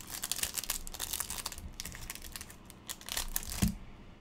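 Plastic wrapper of a trading-card pack crinkling and tearing as it is opened, dense crackles for the first two seconds and then sparser ones, with a brief low sound near the end.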